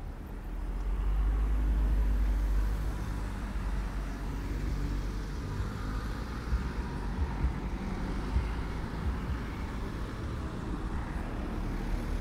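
Cars driving past close by at a city street crossing. A low engine and tyre rumble swells about a second in and is loudest around two seconds, then continues as steady street traffic with a few short knocks in the second half.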